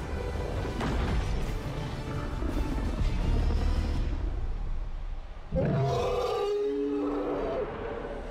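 Film battle soundtrack: dramatic score mixed over deep, dense rumbling effects. About five and a half seconds in the sound dips briefly, then comes back with a sudden loud hit followed by sustained pitched tones.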